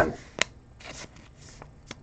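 Baseball trading cards and a plastic pack wrapper being handled, with a sharp click a little under half a second in, soft rustling after it and a light tick near the end.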